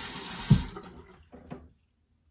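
Water running from a tap into a sink, shut off about three-quarters of a second in, with a thump just before it stops; two faint clicks follow.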